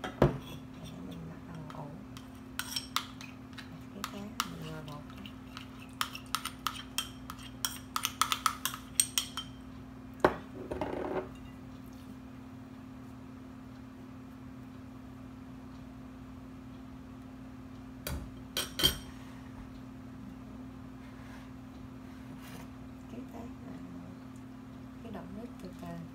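Metal spoon clinking and tapping against a glass mixing bowl. There is a sharp knock at the start, then a run of quick clicks for several seconds and a brief scrape, and two more clinks later on, all over a steady low hum.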